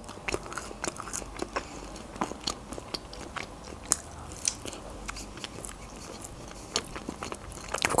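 Close-miked biting into and chewing a slice of homemade pizza, with many small crunches and clicks scattered throughout. The sharpest bites come about halfway through.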